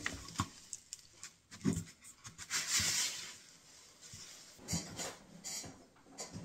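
Workbench handling noises after drilling: a few light knocks and taps of wood and tools on the bench, rubbing, and a short brushing sound about halfway through.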